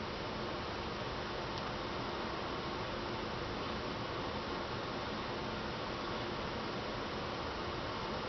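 Steady, even hiss of room tone and recording noise, with no distinct events.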